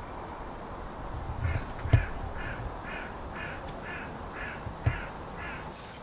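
A crow cawing in a steady series of about nine caws, roughly two a second, starting about a second and a half in. Two short knocks fall among the caws, one about two seconds in and one near the end.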